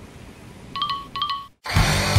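Two identical short electronic chime tones, a little under half a second apart, like a shop's door-entry chime. After a moment's gap, a loud rush of rustling noise follows.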